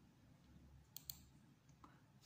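Near silence broken about a second in by a sharp double click, a click on the computer that advances the slideshow to the next slide.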